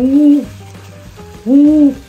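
A woman's drawn-out "ooh" of wonder, voiced twice, each rising and then falling in pitch.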